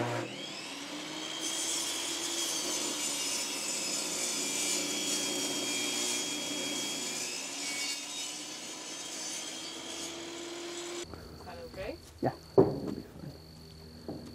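Benchtop table saw running steadily as its blade cuts through a wooden 4x4 post. It gives way about eleven seconds in to quieter, scattered short sounds.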